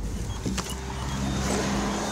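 Car engine idling steadily, heard from inside the cabin, with a few faint clicks.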